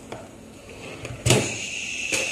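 A sharp click a little past halfway, followed by a steady high-pitched whine that holds to the end.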